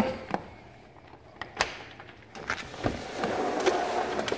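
A sliding glass patio door being opened: a few light clicks, then the door rolling along its track, growing louder over the last second or so.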